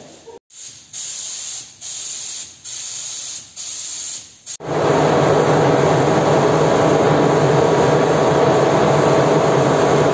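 Paint spray gun hissing in four short, evenly spaced bursts, then a louder continuous spray with a steady mechanical hum from the spraying rig.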